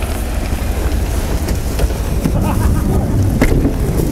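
Wind buffeting the microphone: a steady, uneven low rumble, with a few faint knocks from handling.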